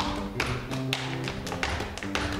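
Zapateo afroperuano footwork: a quick, uneven run of sharp shoe strikes on the stage floor, heel and toe, over sustained guitar accompaniment.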